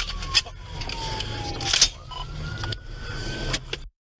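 Police siren wailing, its pitch sliding slowly down and then back up, over the engine and road rumble of a moving car, with a few short clicks. The sound cuts off abruptly just before the end.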